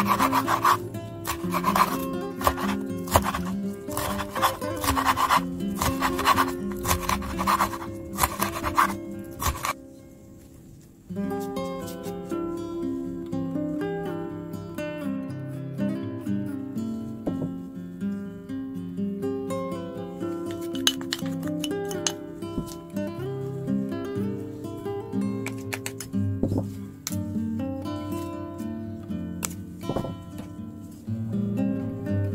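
A chef's knife slicing red chili pepper on a bamboo cutting board, chopping at about two strokes a second for the first ten seconds, then stopping. Background music runs throughout.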